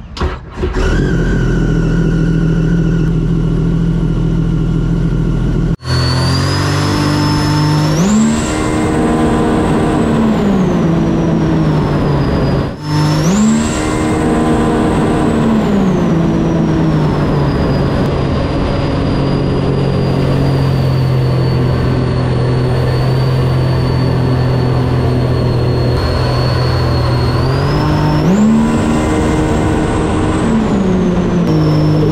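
Supercharged Sea-Doo-based race jet ski engine running: a steady low-speed note at first, then three hard accelerations where the pitch climbs steeply and eases back to a steady cruise. A high supercharger whine rises and falls with the revs. The sound breaks off abruptly twice where shots change.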